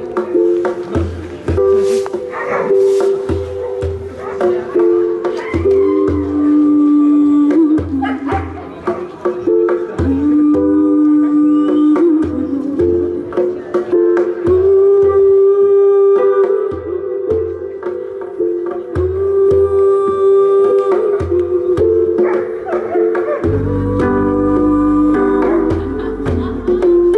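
Live roots reggae band playing: short repeated bass notes under a held, stepping melody line, with the bass settling into longer notes near the end.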